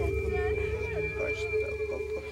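A steady droning tone over a low rumble, with short scattered chirps and whistles over it.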